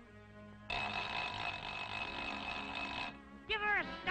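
Cartoon soundtrack sound effect: a loud hissing, whistle-like blast that starts abruptly under fading music, holds steady for about two and a half seconds and cuts off, followed near the end by quick rising-and-falling pitched cartoon sounds.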